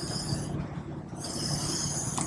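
Two quick breaths blown by mouth into a surface marker buoy tube to inflate it, each a breathy rush of air. The first ends about half a second in and the second starts a little after a second in, over a steady low hum.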